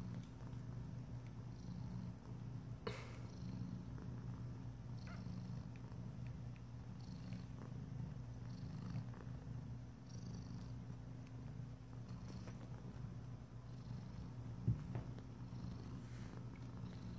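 Mother cat purring steadily while nursing her week-old kittens, with a short click about three seconds in and a soft thump near the end.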